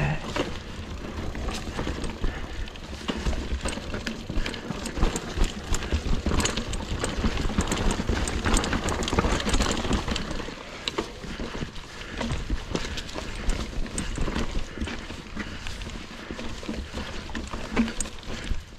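Mongoose Ledge X1 full-suspension mountain bike ridden along a dirt trail: tyres rolling over dirt, leaves and roots under a low rumble, with many irregular clicks and knocks as the bike rattles over bumps.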